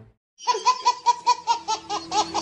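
High-pitched laughter in quick, even pulses, about five or six a second, starting about half a second in after music cuts off.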